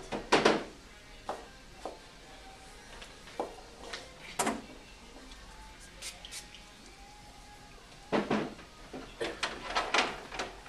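Scattered clicks and knocks of hairstyling tools being handled, a comb and a clamp curling iron picked up and set down, with the loudest knocks about half a second in and around eight seconds. Faint background music plays underneath.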